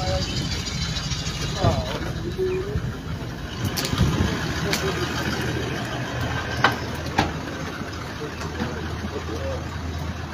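A vehicle engine idling with a steady low hum, under scattered indistinct voices and a few sharp clicks.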